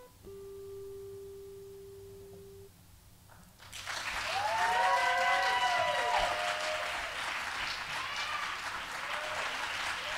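The last note of an acoustic guitar rings out and fades, then, a little under four seconds in, the audience breaks into applause with whoops and cheers.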